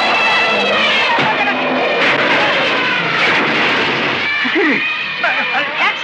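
Film soundtrack: loud background music over a commotion. About four seconds in it gives way to shouts and cries that rise and fall in pitch.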